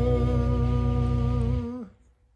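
A man's voice holding the song's final sung note over a sustained low backing chord. Both end together about three-quarters of the way through, the voice sliding down in pitch as it trails off.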